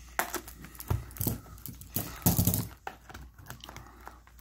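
Plastic shrink wrap on a trading-card booster box crinkling in short, irregular bursts as it is cut open and picked at by hand.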